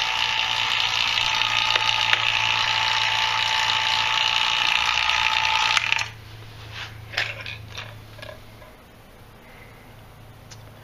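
ZENY refrigeration vacuum pump running with a steady whine and hum as it holds the gauge manifold under vacuum. It is switched off about six seconds in and cuts out suddenly, so the gauge can be watched to see whether the vacuum holds. A few light clicks follow.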